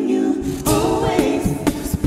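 A six-voice a cappella group singing close harmony on held chords, with vocal percussion keeping a steady beat underneath.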